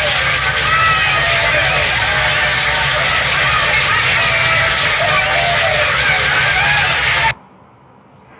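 Crowd cheering and clapping, many voices over a dense wash of applause, which cuts off suddenly near the end.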